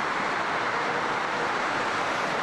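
A steady, even hiss of static-like noise with no pitch or rhythm to it.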